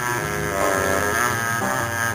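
A live blues band with a horn section playing an instrumental, holding sustained notes.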